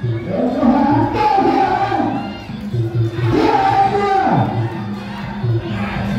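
Muay Thai fight crowd yelling and cheering in two long rising-and-falling shouts, over traditional Thai boxing ring music with a steady drum beat.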